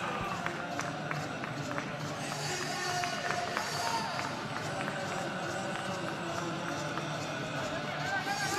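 Football stadium ambience: a steady crowd murmur with scattered distant shouts and voices, and a few faint short clicks.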